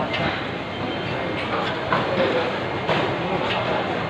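A cleaver cutting through a stingray's wing on a wooden chopping block, a few short knocks and scrapes over a steady din of market chatter.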